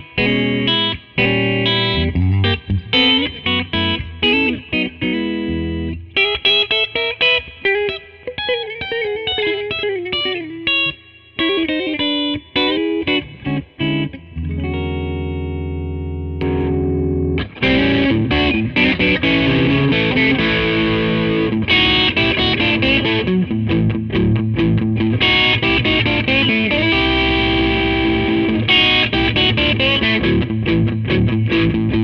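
Gibson Custom Shop 1957 Les Paul electric guitar with humbucking pickups, both pickups on, played through an amplifier with some overdrive: picked single-note licks and chords, a chord left ringing about 14 seconds in, then louder, more distorted chords and riffs from about 17 seconds.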